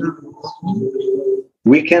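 A pigeon cooing once: a low, steady note lasting under a second.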